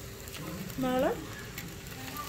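Beaten egg with onion and tomato frying in oil under a chapati, sizzling steadily in the pan. A short rising voice sound comes about a second in.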